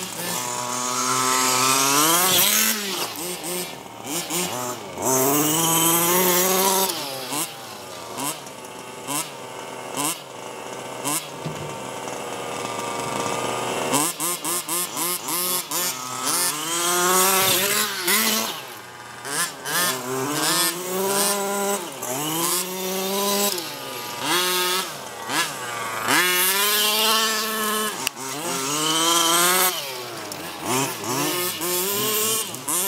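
Small two-stroke gas engine of a 1/5-scale RC car revving up and dropping back over and over as it is driven hard. For several seconds about a quarter of the way in it runs steadier and quieter, then the revving bursts resume.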